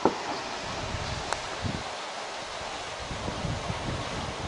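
Wind buffeting the microphone outdoors, an irregular low rumble over a steady hiss, with two short clicks, one at the start and one about a second later.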